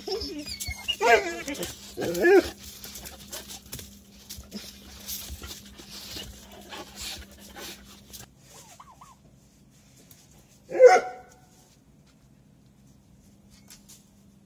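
Dogs whining and giving short yelping barks, two loud bursts in the first few seconds, then scuffling and clicking as they move about close by. One more short loud call comes near the end, after which it goes quiet.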